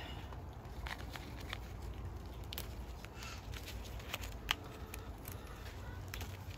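Faint, scattered, irregular ticks and rustles over a steady low rumble of wind on the microphone.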